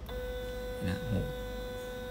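Small stepper motor driving a linear stage on a homing run, giving a steady, even-pitched hum with overtones that starts abruptly at the beginning, as the stage travels toward its home sensor.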